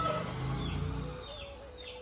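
Faint bird calls: a quick series of short falling chirps, about two a second.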